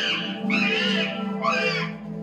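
Indie rock band playing live, electric guitars and bass over drums, with two short high notes that bend up and back down, about half a second and a second and a half in.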